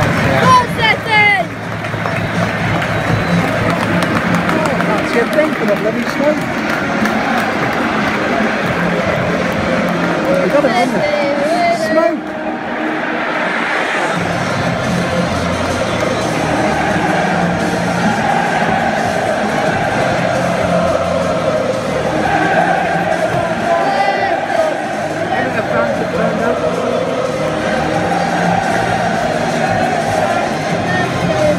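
A packed football stadium crowd singing and cheering over loud music from the stadium PA, a dense continuous wall of voices.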